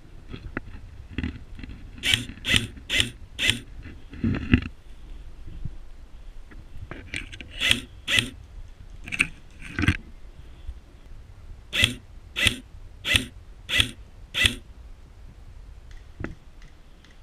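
Airsoft rifle firing single shots in three groups: four at about two a second, a few more spaced irregularly, then five in quick succession near the end.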